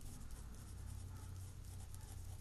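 Pen scratching faintly on paper as words are written by hand, over a steady low hum.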